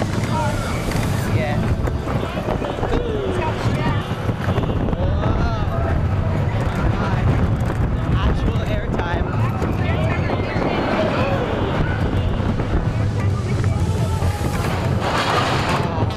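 A small mine-train roller coaster running, its steady rumble mixed with wind buffeting the microphone, and riders' voices and shouts over it.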